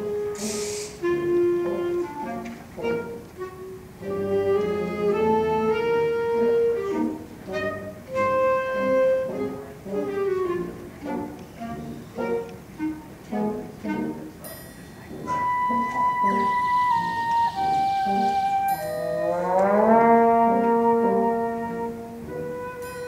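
High school symphonic wind band playing a march: woodwind and brass phrases that change note often, over percussion. A short crash comes just after the start, and near the end the voices slide upward together into a loud held chord.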